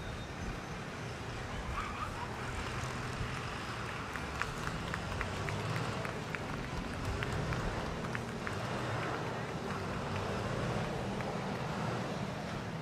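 Outdoor sports-ground ambience: a steady low rumble with faint distant voices, and a run of faint, sharp clicks from about four to eight seconds in.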